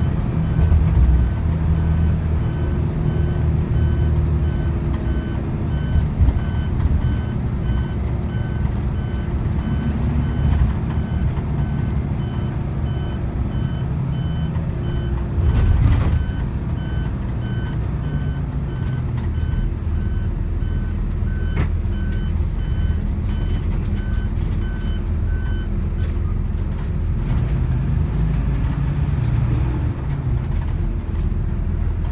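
Engine and road rumble heard from inside a moving bus, with a high electronic warning beep repeating about twice a second that stops a few seconds before the end. A single thump about halfway through.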